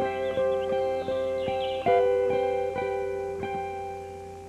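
Background music: plucked guitar notes, a new note every half second or so, each ringing on and the whole slowly fading.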